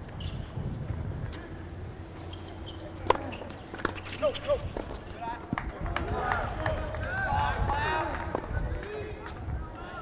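Outdoor tennis court ambience: faint voices far off, a few sharp knocks of tennis balls and a steady low wind rumble on the microphone.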